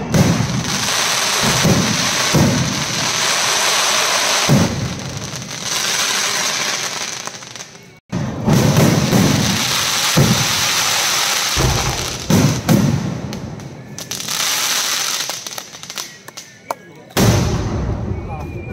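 Aerial fireworks display: shells bursting overhead in quick succession, with dense crackling. Fresh loud bursts come in about halfway through and again near the end.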